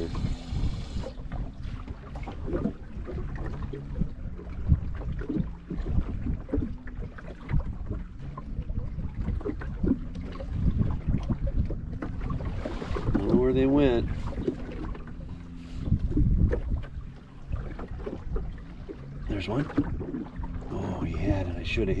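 Wind buffeting the microphone in a low, uneven rumble, with scattered knocks and handling noise from the boat. A voice murmurs briefly about two-thirds of the way through.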